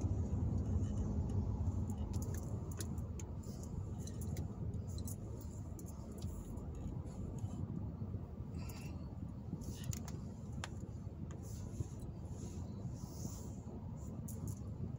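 Car cabin noise while driving in slow freeway traffic: a steady low rumble from the engine and tyres that eases off a little over the first few seconds, with scattered light clicks and rattles.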